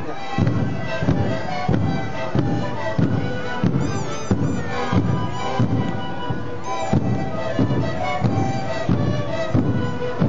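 Sikuri ensemble playing: many siku panpipes sounding held chords in unison over a steady beat of large bombo bass drums, about three strikes every two seconds.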